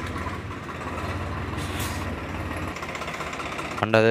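A vehicle engine idling steadily, its low hum fading about three-quarters of the way through, with a brief hiss near the middle.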